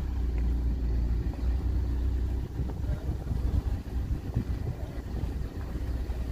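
Low, steady rumble of a car driving slowly, heard from inside the car, with a few irregular knocks in the middle.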